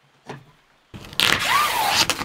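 Breathable wall membrane being handled: a sudden loud rustling and crinkling starts about a second in, with a short rising-and-falling squeak.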